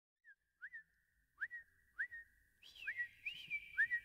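A string of short, high, bird-like whistled chirps, each a quick upward slide, over a faint held whistle tone. The chirps come at an uneven pace and grow busier and layered from about halfway through.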